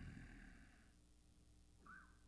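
Near silence: room tone with a faint low hum, and a soft sound fading out in the first second.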